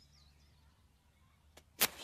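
Quiet stretch, then near the end a faint click and a sharp flick: a cigarette lighter being struck.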